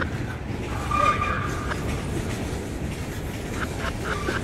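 Freight train of boxcars and covered hopper cars rolling past close by: a steady rumble of steel wheels on rail, with a brief high tone about a second in.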